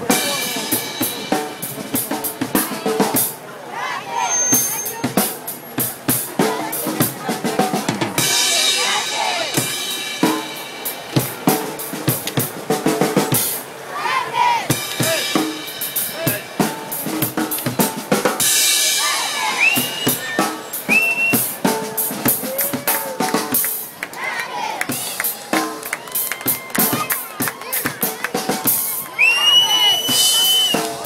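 A drum kit played hard and continuously, bass drum, snare and cymbal hits, with a group of children chanting and shouting along over it.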